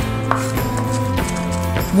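Chef's knife chopping walnuts, raisins, herbs and garlic on a wooden cutting board, a few separate knife strikes over steady background music.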